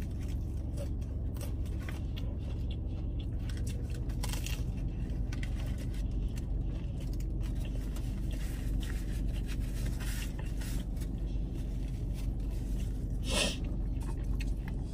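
A steady low hum inside a parked car, with faint eating sounds and the rustle of a paper taco wrapper being handled. There is a short, louder crinkle near the end.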